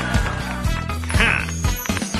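Cartoon background music with a steady bass beat, with a short comic sound effect a little over a second in.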